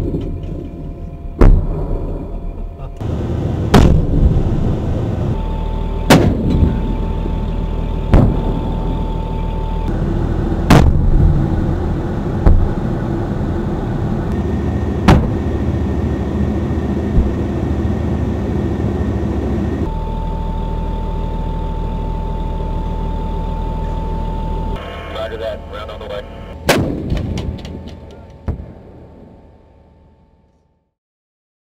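About nine heavy, sharp reports a few seconds apart, from the 105 mm rifled cannon of an M1128 Stryker Mobile Gun System firing and its shells bursting downrange. They sound over the continuous low rumble of the armoured vehicle's engine, with a steady high whine that comes and goes. The sound fades out at the very end.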